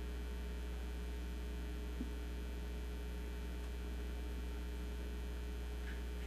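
Steady low electrical mains hum on the recording, with a single faint click about two seconds in.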